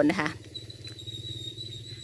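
A steady, high-pitched insect call, like a cricket's, over a low steady hum.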